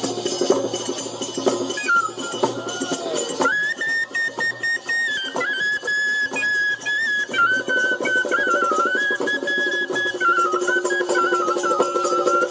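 Bundeli Rai folk music played live: a hand drum keeps a dense, fast rhythm. A high wind-instrument melody enters about two seconds in and is held from about three and a half seconds, moving in small steps between held notes.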